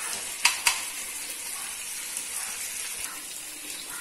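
Fish steaks sizzling as they shallow-fry in oil on a flat iron tawa, a steady high hiss, with a metal spatula clicking twice against the pan about half a second in.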